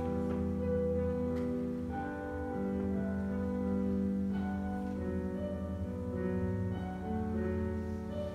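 Live classical instrumental music: a slow piece of sustained, overlapping notes over a steadily held bass note.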